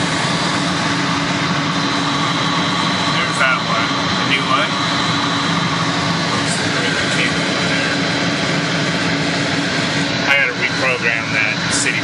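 Steady machinery drone from a VFD-driven booster pump system that is running, with low hum tones and a thin, steady high whine over it.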